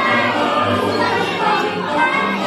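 A group of preschool children singing a song together in unison.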